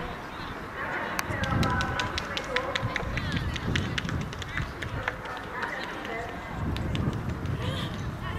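Wind rumbling on the microphone with faint distant voices, and a quick run of sharp clicks in the middle seconds.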